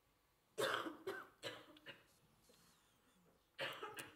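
A person coughing: a quick run of three or four coughs about half a second in, then one more cough near the end.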